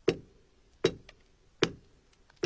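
Ice on a frozen lake being chopped with a hand tool: three sharp strikes a little under a second apart, with faint ticks between them.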